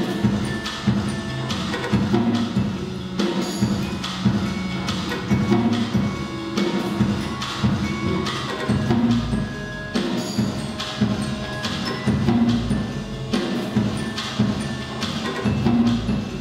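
Motor-driven robotic percussion: mechanical mallets and sticks striking drums and wood-block-like knocks in a steady rhythm, with ringing bell-like tones above.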